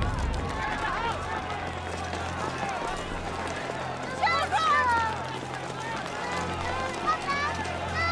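A fleeing crowd shouting and running, with a burst of louder shouts about four seconds in and another shortly before the end, over a steady low hum.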